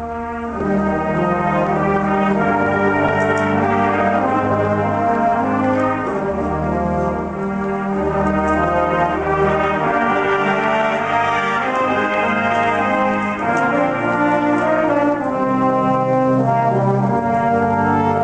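Massed brass ensemble playing slow, sustained chords, growing louder about half a second in, with low brass notes underneath.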